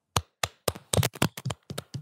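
Hands clapping close to the microphone: a quick, uneven run of about a dozen sharp claps.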